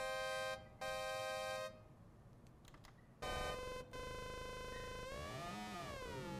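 Moog One polyphonic synthesizer playing a bright, buzzy frequency-modulated tone from oscillator 1 modulating oscillator 2. Two short notes, a pause of about a second and a half, then a held note whose pitch sweeps down and back up near the end.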